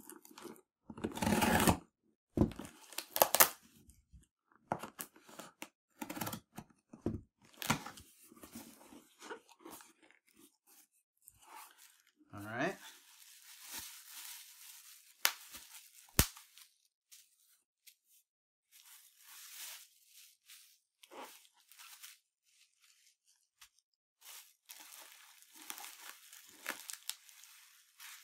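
Packing tape on a cardboard shipping box being cut and torn, with scrapes and knocks as the flaps are pulled open. This is followed by bubble wrap rustling and crinkling in irregular bursts as it is handled and pulled out of the box.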